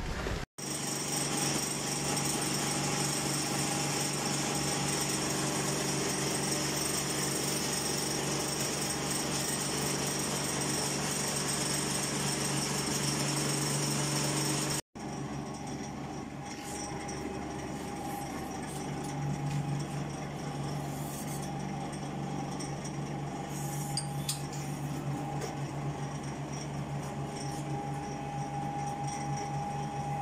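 Three-roll pipe bending machine running steadily. Its small electric motor of about 1 kW drives the rolls through a belt and a worm gearbox. The sound breaks off briefly about halfway and comes back with a slightly different, higher tone and a few light clicks while a stainless tube is rolled into a coil.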